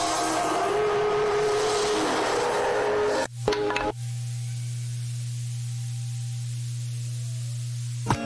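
Soundtrack of a short video playing on a computer: a hissing track with several held tones that cuts off a little over three seconds in, followed by a steady low hum with faint tones above it.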